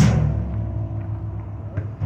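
Live improvised jazz played by keyboard, trombone and drums. A loud drum and cymbal hit lands at the very start and decays, leaving low sustained notes and softer held tones ringing.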